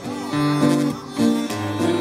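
Live acoustic guitar accompaniment to a country-style song between sung lines, with low bass notes and a held, bending melodic fill over the chords.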